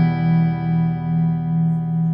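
Background music: a single guitar chord struck just before and left ringing, slowly fading, with a gentle wavering in its level.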